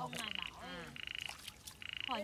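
A frog calling repeatedly: short, finely pulsed, buzzy calls, evenly spaced, about one every second.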